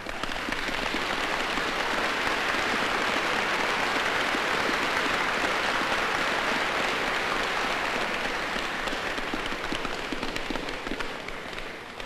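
Audience applauding: a dense, steady patter of many hands clapping that swells at once, holds and dies away near the end.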